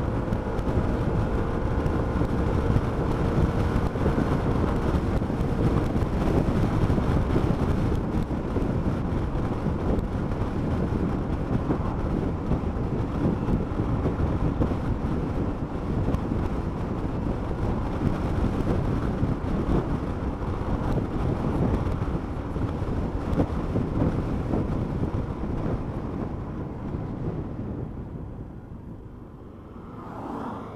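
Wind rush on a helmet-mounted camera microphone, with motorcycle engine and road noise, while riding at speed. The noise dies away over the last few seconds as the bike slows to a stop.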